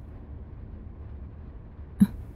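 A steady low rumble of background ambience with no distinct events.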